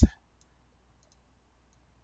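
A few faint, scattered computer mouse clicks as text is selected on screen, after the end of a spoken word at the very start.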